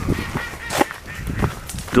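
Ducks quacking, with footsteps on a dirt path strewn with fallen leaves.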